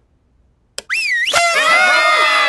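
Near silence, then a single click, a light switch, about three-quarters of a second in. It is followed by a crowd of voices shouting "Surprise!" together in a long, loud, held cry.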